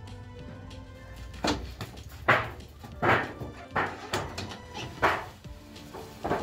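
A dog barking about five times, in short separate barks roughly a second apart, over background music.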